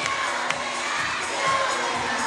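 A crowd of children shouting and cheering together, a steady wall of young voices.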